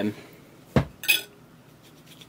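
Cutlery on a ceramic dinner plate during eating: a single sharp knock, then a brief high scrape or clink about a second in.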